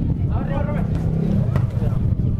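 Voices calling out across a football pitch during play, over a steady low rumble, with one sharp knock about one and a half seconds in.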